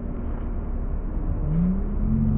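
A steady low rumble, with a faint motor hum that rises in pitch near the end.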